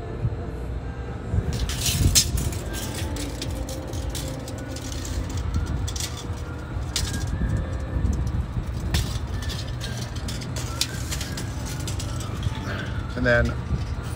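Clicks and rustles from handling a phone and a tape measure, over a steady low background rumble. The clicks come in a cluster about two seconds in, with a few single clicks later.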